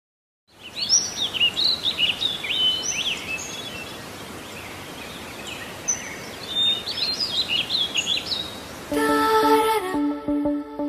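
Birds chirping in many short, quick calls that rise and fall, over a steady outdoor hiss. Music begins about a second before the end.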